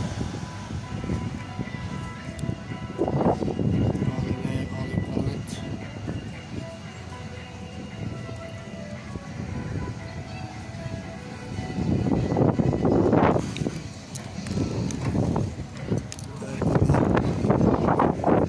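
Amusement-arcade street ambience: music and steady electronic tones from the slot arcades over a background of people talking. There are louder rushes of noise about three seconds in, around twelve seconds in and near the end.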